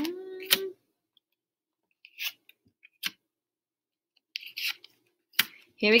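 Paper letter cards being handled and laid down on a wooden tabletop: a few brief, separate taps and rustles spaced over several seconds.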